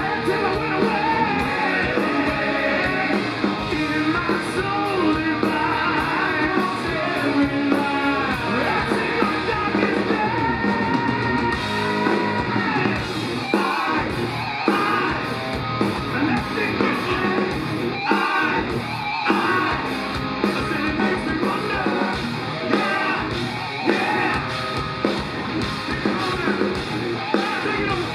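Live hard rock band playing, with two male vocalists sharing the lead vocal over electric guitar and drums, the singing at times pushed into shouts.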